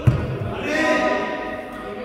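A heavy thud on the court floor from a player's footwork, then a man's short call of about half a second during badminton play.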